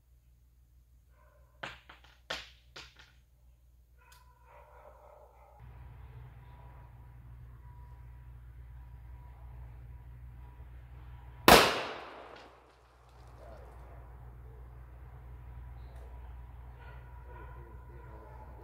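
A single loud, sharp shot from a Taurus 605 snub-nose .357 Magnum revolver about eleven seconds in, with a trailing echo that dies away in about a second. A few light clicks come earlier, about two seconds in.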